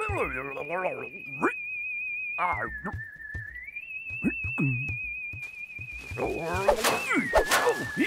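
A cartoon alien babbling in squeaky gibberish over a steady, high, wavering tone that steps down and back up in pitch. Near the end comes a burst of leafy rustling as a branch is pulled about.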